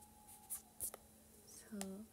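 A faint steady electrical hum, with two soft short clicks or breath noises, then a brief hummed "mm" from a woman near the end.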